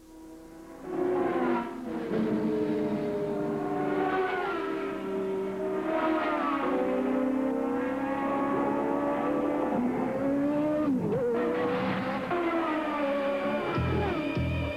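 Indy car engines at high revs, their pitch gliding up and down, mixed with music; about eleven seconds in one pitch drops sharply.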